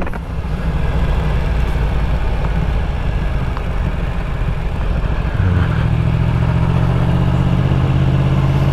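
Yamaha MT-10 motorcycle's crossplane inline-four engine running at low speed on the move; about five and a half seconds in its note settles into a steadier, stronger hum.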